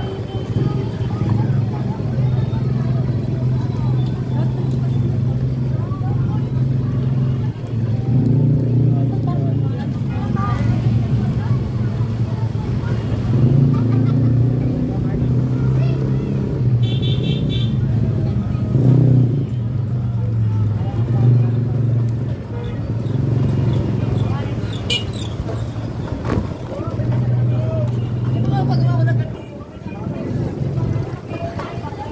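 Busy street traffic heard while riding a bicycle: motorcycle and scooter engines running close by, with a loud steady low hum that shifts in pitch every few seconds, and people's voices.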